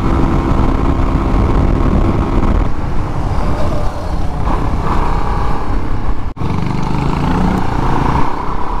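Suzuki DRZ400SM single-cylinder four-stroke engine running at road speed, with wind noise on the helmet microphone; there is a momentary gap in the sound about six seconds in.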